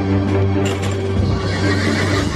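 A horse whinnies, starting under a second in, over background music with sustained low notes.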